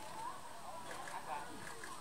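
Several people talking at once in the background, a mix of overlapping voices with no clear words.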